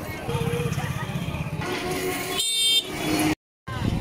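Busy street crowd: people chattering over vehicle engines, with a short horn blast about two and a half seconds in. The sound drops out completely for a moment near the end.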